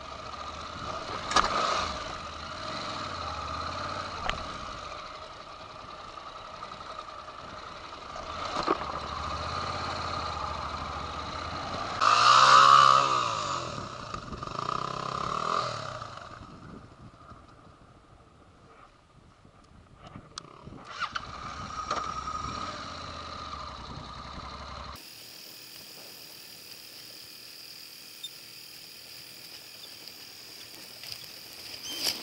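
Honda NC700X motorcycle's parallel-twin engine running at low revs, with a louder surge about twelve seconds in. The sound falls low for a few seconds before the engine picks up again, and near the end it changes abruptly to a steadier hiss.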